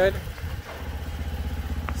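Large diesel engine idling: a steady low rumble with a fast, even pulse.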